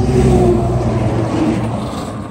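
Tractor-trailer semi-truck passing close by on the highway, its engine and tyre noise loudest about half a second in, then slowly fading as it drives away.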